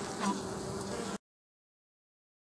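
Uruçu nordestina stingless bees (Melipona scutellaris) buzzing in an open wooden box hive, a steady hum that cuts off suddenly a little over a second in.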